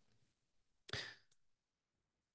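Near silence, broken once about a second in by a short, soft intake of breath.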